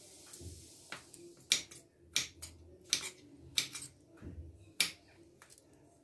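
Kitchen knife slicing through crisp, raw bottle gourd (lauki) held in the hand, each cut a sharp crisp snap, about one to two a second at an uneven pace.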